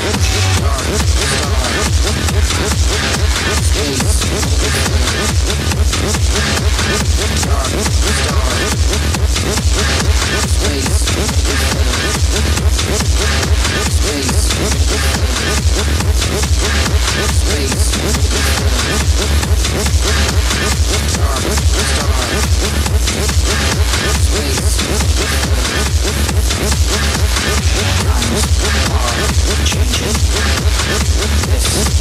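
Techno DJ set playing loud: a steady, driving beat with heavy bass that grows stronger just after the start.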